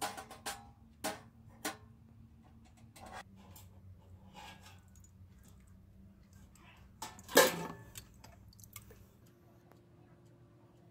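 Stainless steel tweezers clicking and tapping against a stainless steel pan as a silver piece is dipped in a heated pickle bath: four sharp clicks in the first two seconds, then softer handling noises. A single louder metal clatter comes about seven seconds in.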